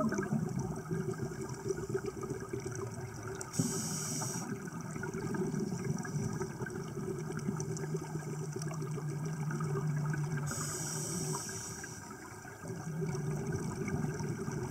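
Underwater sound of scuba divers breathing on regulators: a continuous rush and gurgle of exhaust bubbles, with two short hissing bursts, about four seconds in and again after ten seconds. A faint low hum comes and goes in the second half.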